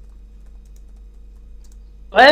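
A pause in speech holding a low steady electrical hum with a few faint, scattered clicks.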